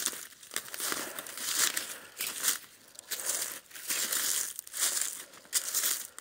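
Footsteps crunching through deep, dry fallen leaves at a walking pace, one rustling crunch after another.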